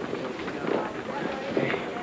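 Indistinct background voices of office chatter, with footsteps.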